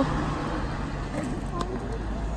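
A taxi car driving past close by on the road, its engine and tyres making a fairly steady noise.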